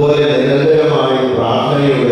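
A man's voice chanting into a handheld microphone, each note held at a steady pitch for a moment, with short breaks between.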